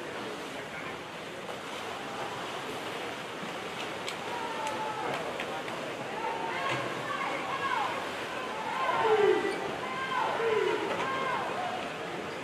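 Echoing indoor pool: a steady wash of swimmers splashing under the noise of spectators, with voices shouting encouragement in the second half, loudest in a few falling yells near the end.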